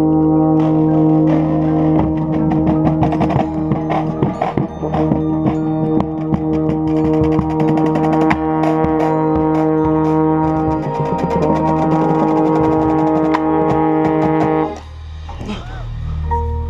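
Drum and bugle corps brass line playing a loud held chord, with a euphonium right at the microphone, while the drums and front-ensemble percussion play hits and runs underneath. The ensemble cuts off together about a second before the end, leaving quieter mallet-percussion notes.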